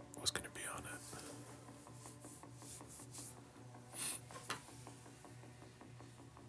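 A person's soft, breathy whispered sounds: a few short hushed bursts and exhalations, the strongest about four seconds in, over a faint steady hum.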